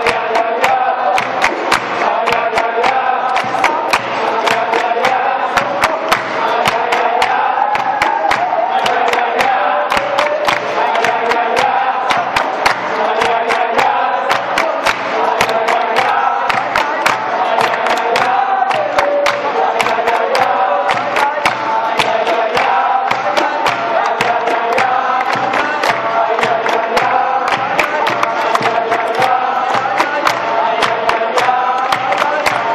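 Capoeira roda music: a group of voices sings a chant together over berimbaus, pandeiro and handclaps, with the strikes keeping a steady, quick beat.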